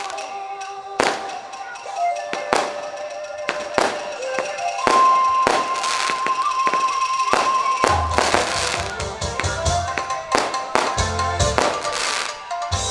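Firecrackers going off in irregular sharp bangs over stage music with long held tones; about eight seconds in, a backing track with a deep bass beat starts.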